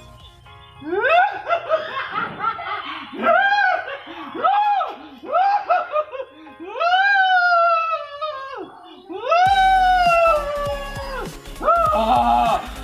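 Laugh-like comedy sound effect: a series of high pitched calls that swoop up and then down. The first ones are short and quick, then come two longer, drawn-out ones. Backing music with a deep beat comes in after about nine and a half seconds.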